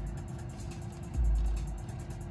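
Electronic loop playing from the Tesla TRAX sequencer at 140 BPM, with TR-808 drums, synth bass and saw-wave tracks. A deep bass boom comes a little over a second in, over fast, even ticks and a held note.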